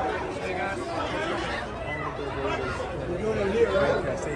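Crowd chatter: many people talking at once, with a nearer voice standing out toward the end.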